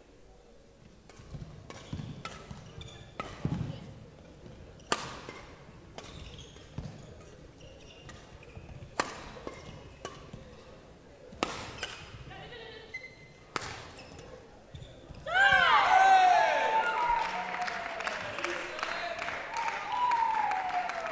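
Badminton rally: sharp racket strikes on the shuttlecock every few seconds, a handful in all. About fifteen seconds in, the rally ends in a loud burst of shouting and cheering, the loudest sound here.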